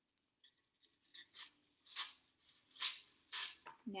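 Apple quarter slid down the slicing blade of a metal box grater: about five short scraping strokes, roughly half a second apart, starting about a second in.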